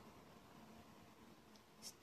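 Near silence: faint room tone, with a short soft hiss near the end as a woman begins to speak.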